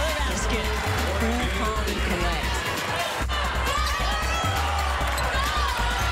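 Basketball game sound from the arena: a ball bouncing on the hardwood court amid crowd noise, with a sudden short break a little over three seconds in.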